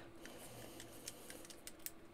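Faint, scattered clicks and taps of a small gearmotor and 3D-printed plastic chassis parts being handled and pushed into place by hand, over a faint steady hum.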